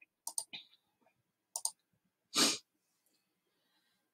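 Small mouth clicks from a woman pausing between sentences: a few quick ones, two more about a second and a half in, then one short breath about two and a half seconds in. There is dead silence in between.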